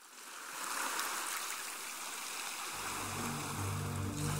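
Sea surf washing, fading in from silence. About two-thirds of the way through, low sustained music notes come in under it.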